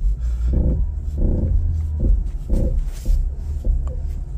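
Renault Mégane's engine running under load with a steady low rumble as the car is driven against a frozen parking brake that will not fully release and drags the tyres.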